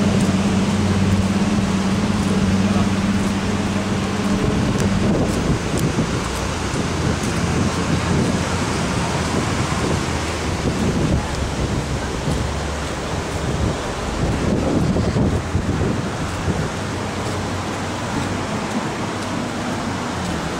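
Wind buffeting the camera's microphone in wet, stormy weather, a rough rumbling noise that comes in gusts. A steady low hum runs under it and stops about four seconds in.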